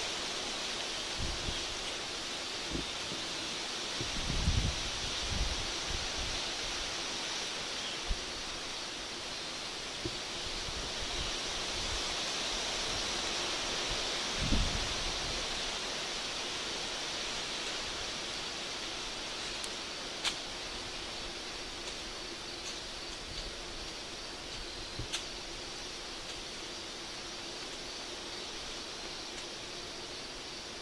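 Wind rustling the leaves of the trees, a steady hiss, with two low gusts buffeting the microphone about four and fourteen seconds in, and a few faint ticks.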